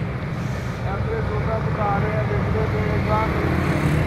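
Steady low rumble of roadside traffic, with indistinct voices of people nearby.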